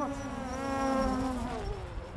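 Drone's buzzing whine sweeping past as a fly-by sound effect: it grows louder to a peak about a second in, then drops in pitch and fades away, over a low rumble.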